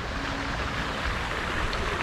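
Steady hiss of running or spraying water.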